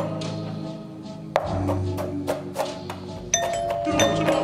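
A late-1950s doo-wop ballad plays while a kitchen knife chops an onion on a plastic cutting board in a series of sharp knocks. Near the end a doorbell chime rings out.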